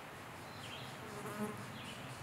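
A flying insect buzzes briefly past the microphone about a second in, a short low hum that swells and fades. High bird chirps repeat faintly underneath.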